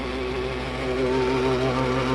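Engine running at steady throttle, driving the hydraulic belts of a compact sidedresser spreader, with a steady hum. About a second in it gets a little louder and a higher whine joins.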